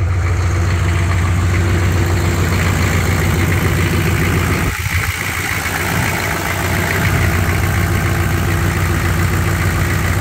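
GM 6.5-litre turbo-diesel V8 idling loud and steady shortly after a cold start, with its new DS4 injection pump timed on the aggressive side at −1.6. The sound dips briefly about halfway through.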